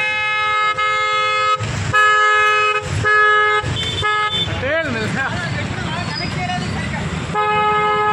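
Vehicle horns honking in a run of long blasts over the first four and a half seconds, one of them higher in pitch, then another long blast near the end, with voices between them.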